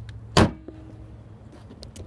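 A Dodge Caravan minivan's hood being shut: one loud slam about half a second in.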